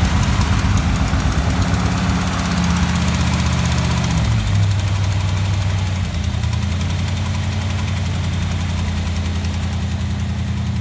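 A 1959 Ford Galaxie's 332 Thunderbird Special V8 running just after a cold start, following nine months of sitting. The engine speed steps down about four seconds in and again around six seconds, then holds at a steady idle.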